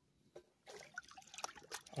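Faint small splashes and drips of shallow lake water stirred by a hand. A few scattered drips come first, then a denser patch of splashing from under a second in.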